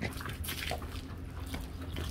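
Hands scrubbing a horse's wet, soapy coat during a bath, with irregular scratchy bursts of rubbing and dripping water.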